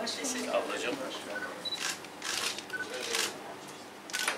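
Camera shutters clicking several times with a few short beeps, as photos are taken of a posed group, over low murmured talk.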